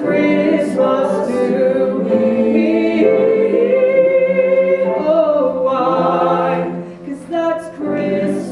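A small vocal ensemble singing a Christmas song in close harmony, unaccompanied, with sustained held notes; the sound thins briefly near the end before the voices come back in.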